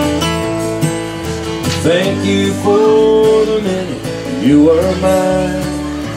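Instrumental break of a slow country song: a strummed steel-string acoustic guitar over a bass line that steps to a new note about once a second, with a melody line that slides up into its notes twice.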